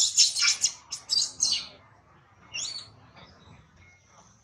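Young long-tailed macaque squealing: a quick run of high-pitched calls for about a second and a half, then one more short call about two and a half seconds in.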